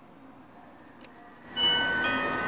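Doorbell rung from a wall-mounted intercom panel's push button: a faint click about a second in, then a loud ringing of several steady tones at once starting about one and a half seconds in.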